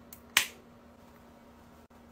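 A single sharp plastic click about a third of a second in: the flip-top cap of a toner bottle snapping open.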